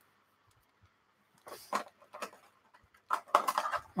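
Plastic bag around model-kit sprues crinkling as it is handled: a few crinkles about one and a half seconds in, then a busier run of crinkling near the end.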